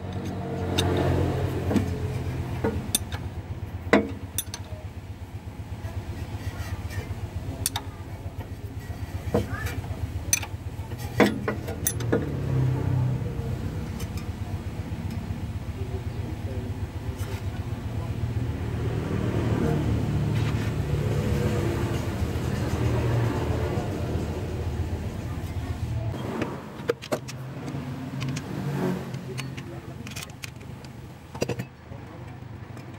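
Sharp metallic clicks of a ring spanner on the crankshaft sprocket bolt as the crank of a Suzuki Carry engine is turned by hand, over a steady low mechanical hum that drops away near the end.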